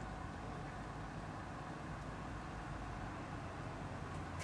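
Steady, low background rumble and hiss of outdoor ambience, with no distinct events.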